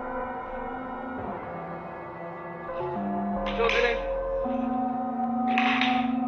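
Eerie ambient background music: held drone notes that shift in pitch every second or so, with two short hissing bursts partway through.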